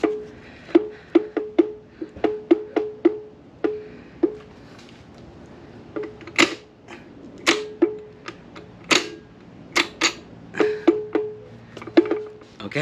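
Metal transmission case knocking against the engine block as it is rocked up and down to seat it: its input shaft has not yet dropped into the pilot bearing. A run of irregular sharp metallic clanks, many with a short ring, coming in bursts with a lull about four to six seconds in.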